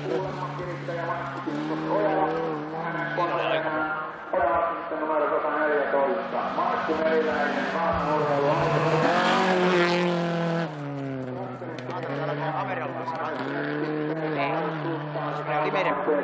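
Rally car engines revving hard on a gravel stage, the pitch climbing and falling through gear changes as one car drives away and another approaches.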